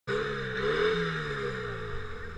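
An engine running, its pitch wavering and then dropping near the end.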